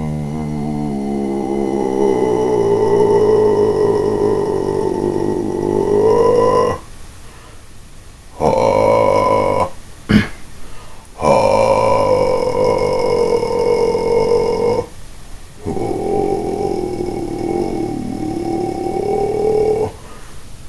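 A person's voice holding long, low sustained notes, four of them separated by short pauses, its main resonance drifting slowly up and down, as a practised vocal technique. A short sharp click comes about halfway through.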